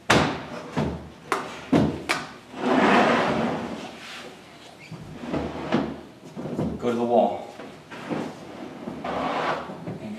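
A large acrylic wet-dry trickle filter is slid and bumped into a wooden aquarium stand. There is a quick run of sharp knocks and clatters in the first two seconds, then scraping and sliding with further knocks.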